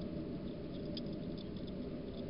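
A hedgehog eating from a dish: small, quick clicks and crunches of chewing, a few bunched together about a second in, over a steady low hiss.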